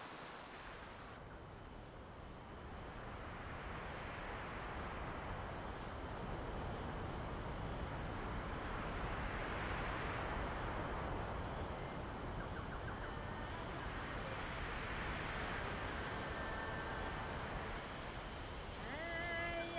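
Insects chirping in a high, evenly pulsing trill that carries on steadily, over a soft rushing background noise that swells and eases off around the middle.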